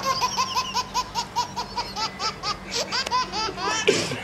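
A person laughing in a quick run of short, high 'ha' pulses, about five a second, for a couple of seconds, with a few more laughs near the end.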